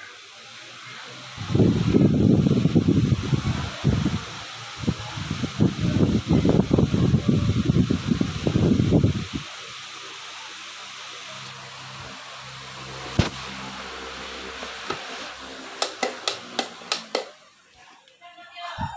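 An 18-inch Maspion industrial fan running, a steady rush of moving air. For several seconds in the first half its airflow buffets the microphone with a heavy, uneven low rumble. Near the end comes a quick run of sharp clicks.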